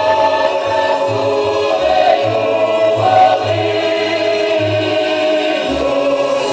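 Mixed choir of women and men singing a Ukrainian folk song in long held notes.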